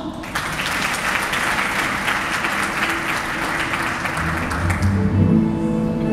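Audience applauding, the clapping thinning out toward the end. About four seconds in, low double bass notes start and an acoustic guitar comes in as the next song begins.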